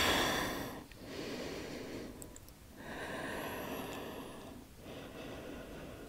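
A woman's soft, slow breathing: several breaths in and out, each lasting about a second or two, with short pauses between them.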